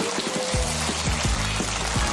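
Studio audience applauding, with closing music coming in about half a second in as low, evenly repeated notes under the clapping. The audio cuts off suddenly just after.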